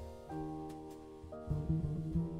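Live jazz instrumental passage: piano holding a sustained chord, with double bass notes coming in low about one and a half seconds in.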